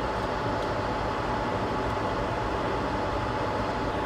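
Steady machine noise: an even hiss with a faint, constant hum tone, unchanging throughout.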